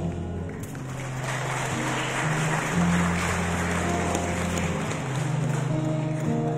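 Live pop band playing an instrumental passage on electric guitars and keyboard, with sustained low bass notes that change every second or two. A hissing wash of noise swells in about a second in and fades by about four seconds in.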